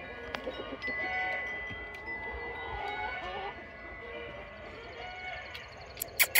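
Wind chimes ringing softly, several overlapping bell-like tones that sound and fade, with a few faint clicks.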